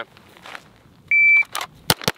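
A shot timer's start beep: one steady high tone about a second in, lasting about a third of a second. Half a second later comes the first shot from an Atlas Gunworks Athena Tactical 2011 pistol drawn from the holster, sharp and loud, near the end.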